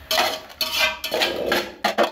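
A steel cooking pot being gripped and moved, giving about four quick metal scrapes and clanks with a short metallic ring.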